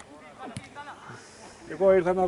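Voices calling out faintly at a football match, then a loud drawn-out shout near the end.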